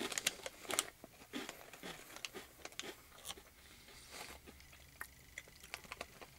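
Chewing crunchy Lotte shrimp-and-squid cracker sticks: a run of faint, short crunches, thickest in the first second and thinning out after.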